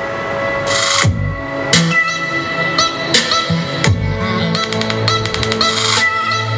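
Electronic music played from a phone through a Philips MMS3535F 2.1 speaker system with subwoofer: a steady beat with deep bass notes that slide down in pitch about every three seconds, and a fast stuttering run of hits in the second half.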